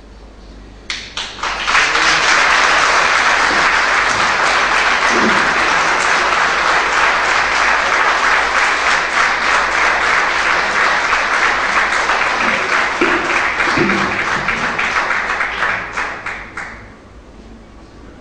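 Audience applauding. A few claps about a second in swell quickly into sustained applause, which dies away about a second before the end.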